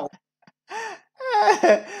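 A person's voice: a short vocal exclamation about a second in, then a longer run of voiced speech sounds with no clear words.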